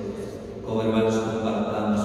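A male voice chanting a liturgical melody in long held notes, which drops back briefly before swelling again just under a second in.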